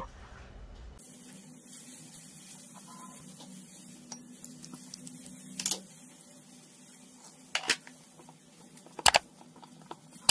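Faint clicks and taps of utensils against small ceramic bowls as seasonings are combined and stirred, three sharper clicks standing out in the second half over a faint low hum.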